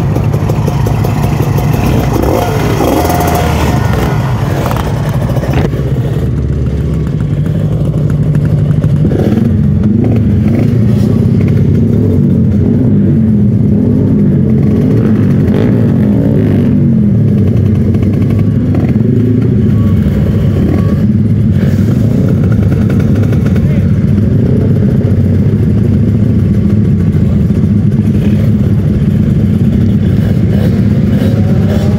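Kawasaki Ninja RR 150 two-stroke single-cylinder engine idling steadily, with people talking nearby.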